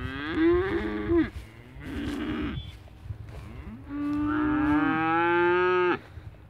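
Young dairy heifer calves mooing: three calls, the first about a second long, a short second one, and a long last call held for about two seconds that cuts off suddenly.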